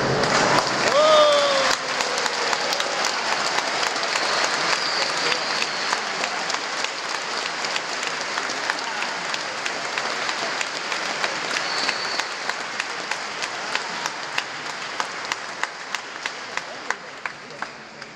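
Congregation applauding, with a short cheer from one voice about a second in; the applause slowly thins out to a few scattered claps near the end.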